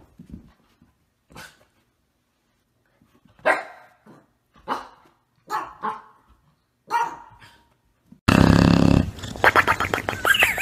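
A dog barking in a series of short, separate barks about a second apart. Near the end a sudden loud rush of noise cuts in.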